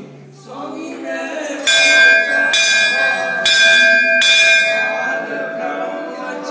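Temple bell struck four times, a little under a second apart, starting a couple of seconds in. Each strike rings on with a clear, steady tone that overlaps the next, with faint chanting voices underneath.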